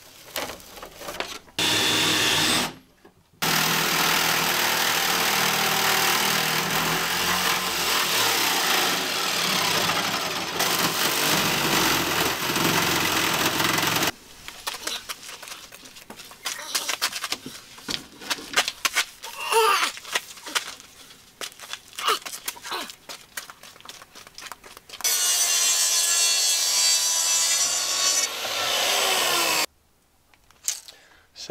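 A power saw cutting wood, in a long steady run of about ten seconds, a brief burst just before it and a second run of a few seconds near the end that carries a steady motor whine. In between come scattered knocks, scrapes and clicks of boards being handled.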